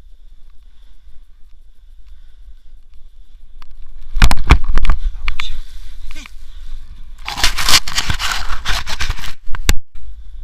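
Snowboard and rider scraping and sliding through snow during a fall, with loud crackling bursts of snow rubbing and spraying against a body-worn camera from about four seconds in. The bursts are heaviest from about seven to nine seconds. Before that there is only a soft wind rumble.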